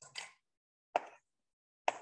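Chalk striking and drawing short strokes on a blackboard: three brief sounds about a second apart, each starting sharply and trailing off quickly.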